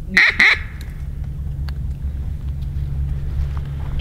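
Two loud duck quacks in quick succession in the first half second, then a steady low rumble.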